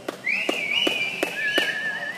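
Loud whistling close by: one whistle rises and is held, then a second, lower, wavering whistle overlaps it near the end. Evenly spaced hand claps, about three a second, run beneath.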